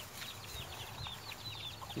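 Chicken chicks peeping: a quick run of faint, high, falling peeps, several a second.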